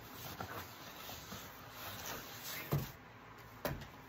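Cardboard record mailer being pulled open along its tear strip and the LP slid out: quiet rustling and scraping of cardboard, with two short clicks in the second half.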